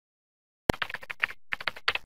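Computer keyboard typing: a quick run of keystroke clicks starting about two-thirds of a second in, a brief pause, then a second run that cuts off suddenly at the end.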